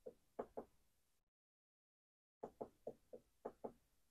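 Faint clicks of a function generator's push-button being pressed repeatedly to step through its waveform menu: three quick presses in the first second, then six more in a row from about two and a half seconds in.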